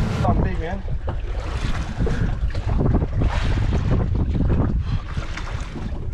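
Wind buffeting the microphone, with water slapping against the hull of a boat sitting on the water.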